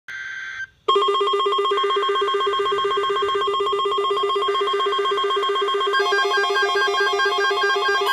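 Several NOAA weather alert radios, including Midland units, sounding their alert alarms at once: a short data-like tone burst, then rapidly pulsing electronic beeps at a few pitches that start about a second in. Further beeping patterns join around four and six seconds in as more radios go off, signalling a severe thunderstorm watch alert being received.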